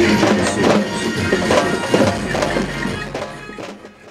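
A troupe of large double-headed barrel drums (dhol) beaten together in a fast, dense rhythm, fading out near the end.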